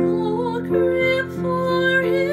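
A woman singing a slow, gentle melody with vibrato over a steady instrumental accompaniment.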